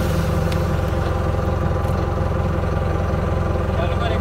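Vehicle engine idling steadily, an even low hum with no change in pitch or level.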